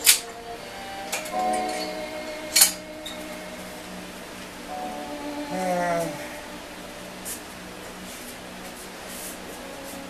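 Background music playing, with two sharp metallic clanks about two and a half seconds apart from the cable weight machine as the weights are let down.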